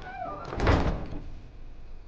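Wooden lattice door creaking on its hinges with a short squeak, then a loud thud of the door swinging to about half a second in.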